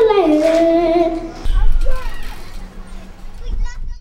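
A child's voice holding one sung note for about a second and a half, then a low rumble with faint children's voices.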